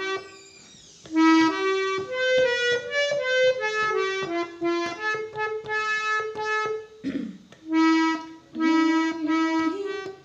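Harmonium playing a Hindi film-song melody one reedy note at a time. It starts about a second in and breaks off briefly around seven seconds before going on.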